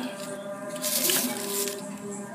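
Soft rustling from hands handling dry, rooty bulbs beside a plastic bag on a concrete floor, strongest briefly about a second in.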